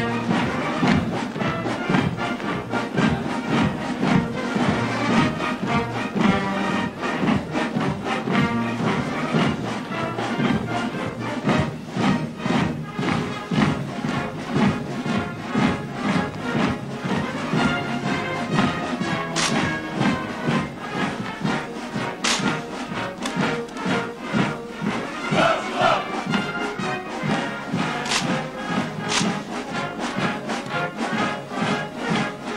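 Military brass band playing a march with a steady beat. In the second half a few sharp clacks cut through, from the honor guard's rifle drill.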